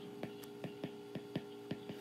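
Stylus tip tapping and clicking on a tablet's glass screen during handwriting: about ten faint, irregular ticks over a steady hum.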